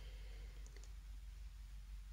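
Faint handling sounds with a few light clicks, as a beaded chain and ribbon are worked between the fingers, over a low steady hum.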